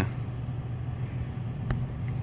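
Toyota SUV's engine running steadily at low revs as it crawls over rocks on a trail, with a single sharp knock near the end.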